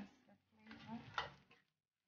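Wooden spoon stirring and tossing noodles in a stainless steel pot, with one sharp knock of the spoon against the pot a little over a second in. Mostly quiet otherwise.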